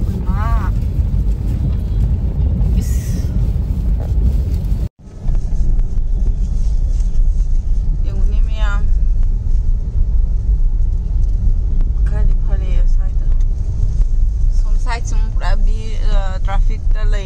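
Steady low rumble of a car driving, heard from inside the cabin, with scattered voices now and then. The sound drops out for a moment about five seconds in.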